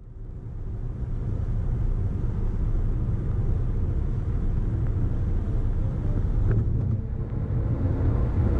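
Car driving at highway speed: a steady low rumble of tyre and road noise, fading in over the first second.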